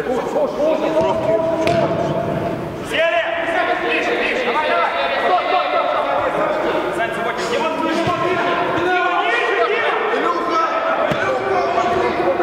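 Men's voices shouting and calling over one another during an indoor five-a-side football match, with the occasional thud of the ball being kicked.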